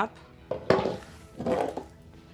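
Metal grooming comb drawn up through the curly hair of a Goldendoodle's foot in two short scraping strokes, lifting the coat before it is scissored.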